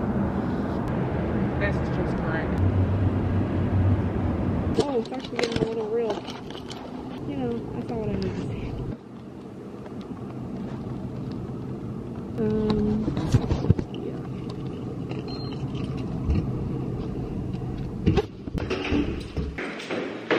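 City outdoor ambience: a steady low traffic rumble with distant, unintelligible voices calling out now and then. Near the end it gives way to a few knocks and thumps.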